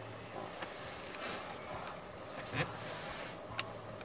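Quiet car cabin with the engine off: a faint steady hiss, with a few soft clicks from the steering-wheel menu buttons as the dash menu is stepped to the maintenance reset.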